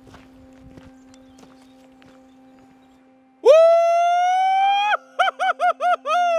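A man's aturuxo, the high-pitched Galician shout: one loud cry held for about a second and a half that rises slightly, then a quick run of five short yelps. Before it there is only faint outdoor quiet.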